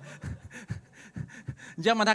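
A man laughing breathily into a microphone: short, irregular puffs of breath. Near the end, a drawn-out, pitched voice starts up.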